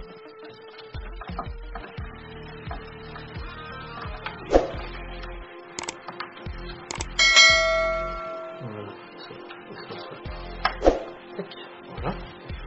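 Subscribe-button animation sound effects: two sharp mouse clicks, then a notification bell ding that rings out for about a second and a half. This is over faint background music, with a thud just before the clicks and another near the end.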